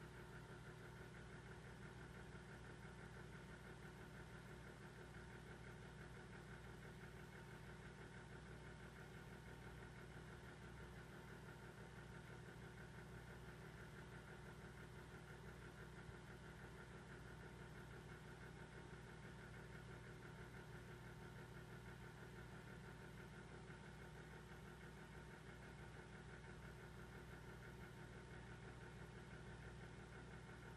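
Near silence with a faint, steady low hum that does not change.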